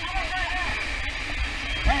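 Faint voices of firefighters over a steady hiss and a heavy low rumble of bumping and rubbing on a body-worn camera's microphone as it moves through a smoke-filled burning house.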